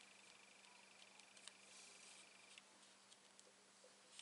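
Near silence: room tone with a faint steady hum and a few faint light ticks.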